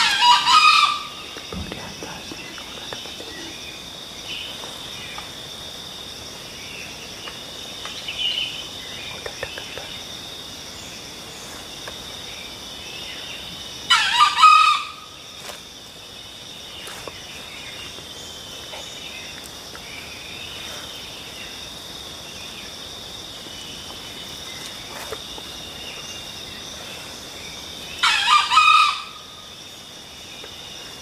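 Junglefowl rooster crowing three times, each crow short and about fourteen seconds apart. A steady high drone of insects runs underneath.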